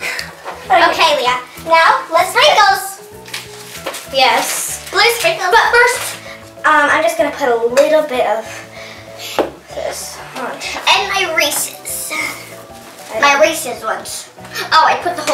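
Children's voices over background music with a stepping bass line.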